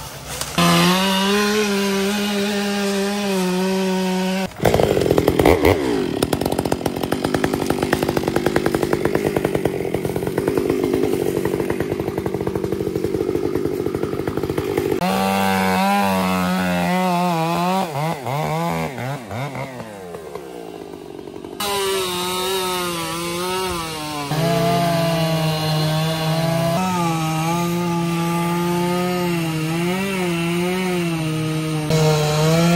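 Gas chainsaws running hard and cutting through downed logs. The engine note holds steady in stretches and changes abruptly a few times, with a rougher, noisier stretch from about 4.5 s to about 15 s.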